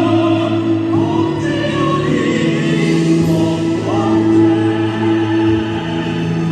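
A female and a male singer performing an operatic duet into handheld microphones, holding long notes over an instrumental accompaniment.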